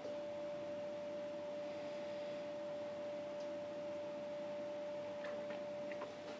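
Steady single-pitched hum from brewery equipment, with a few faint ticks near the end.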